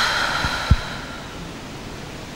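A breathy hiss of air into a handheld microphone, fading away over about a second, with two brief low bumps of the microphone being handled.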